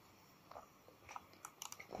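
Near silence with a few faint small clicks and rustles from handling the leather jacket during hand-sewing, starting about half a second in.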